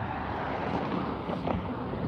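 Steady road traffic noise: a continuous rush of cars and tyres passing on the adjacent multi-lane road.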